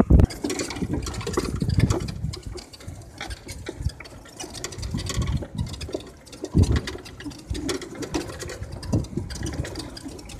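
Golf cart driving over grass, its motor running, with frequent rattles and knocks as it moves and low wind rumble on the microphone.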